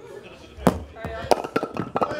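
A heavy wooden skittle ball lands with a sharp knock, then wooden skittles are struck and clatter in a quick series of knocks near the end.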